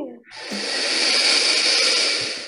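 A loud breathy hiss that swells up about half a second in and holds for over a second before fading, played from a recorded animal-sound clip over a video call.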